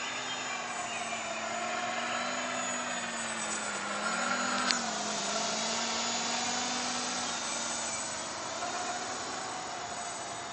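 Scarab 660 quadcopter's electric motors and propellers whining in flight, the pitch drifting up and down as the throttle changes, loudest about halfway through. A single sharp click sounds near the middle.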